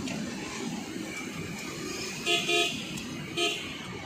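Steady road and engine rumble heard from inside a moving car, with a vehicle horn giving two quick toots about two seconds in and one more about a second later.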